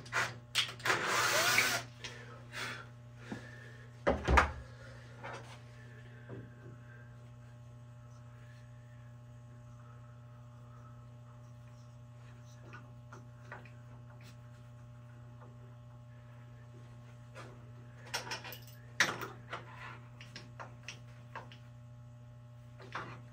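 A cordless drill runs into a wood block for about two seconds, followed by a sharp knock. Then a quiet stretch of low steady hum with faint scattered ticks while an M8 tap is turned into the wood by hand, and a few knocks and clicks near the end.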